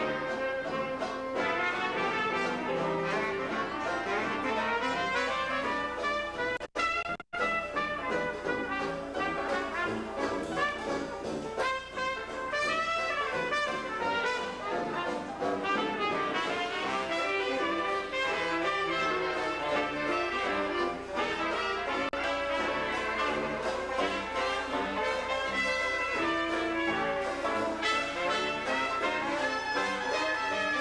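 Traditional jazz band playing live, with trombones, trumpet and clarinet over a tuba bass line. The sound cuts out twice for an instant about seven seconds in.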